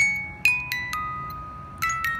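Wind-up music box with a brass pinned cylinder and steel comb playing a slow tune: single high plucked notes, about one every half second, each ringing out and fading.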